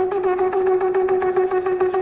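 Shofar (ram's horn) blown on one steady pitch in a rapid run of short, staccato pulses, about six a second.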